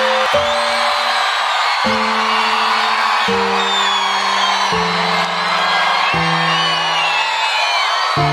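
Live band playing a slow instrumental passage of sustained chords that change about every one and a half seconds, with the audience cheering and whooping over it.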